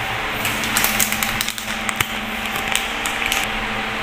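Steady low hum of a running appliance, with several light clicks and knocks scattered through it.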